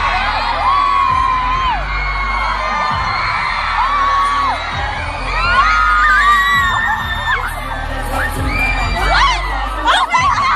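Live pop concert music heard from among the audience, with the crowd of fans screaming and singing along loudly over it, their high voices sliding up and down.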